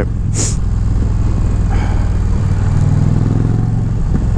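Indian Challenger's liquid-cooled V-twin on its stock exhaust, running at highway speed and heard from the rider's seat as a steady low drone. The engine note changes about two and a half seconds in, and a short hiss comes about half a second in.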